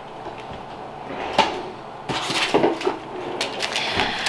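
Kitchen cabinet being opened and shut, a few knocks and rustles starting about halfway through, as a roll of paper is taken out.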